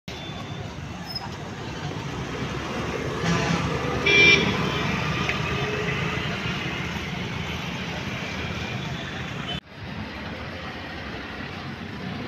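Road traffic passing steadily, with a vehicle horn sounding briefly about four seconds in. The sound drops off suddenly a little before the end, leaving quieter background noise.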